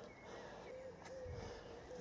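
Faint, quiet outdoor background with a few short, thin calls from a distant bird.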